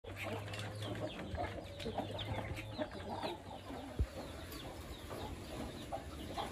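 Poultry calling around a feed pan: chickens and young Muscovy ducks give many short clucks and chirps. A single sharp knock sounds about four seconds in.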